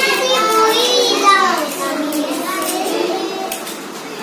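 Young children's voices talking and calling out, with a high gliding call about a second in. The voices grow quieter in the second half.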